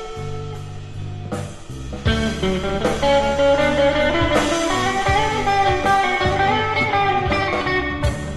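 A live blues-rock band of electric guitars, bass guitar and drum kit playing, with sustained, bending electric guitar lines over the rhythm section. The band drops back in the first couple of seconds, then comes back in together with a sharp hit about two seconds in.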